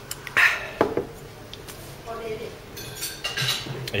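Clatter of dishes and cutlery, with two sharp knocks in the first second and more clinking near the end.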